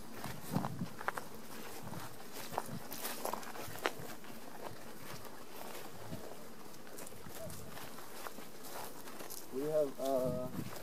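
Light footsteps and rustling through grass in the open air, a few soft clicks in the first few seconds over a faint steady background. A voice starts up near the end.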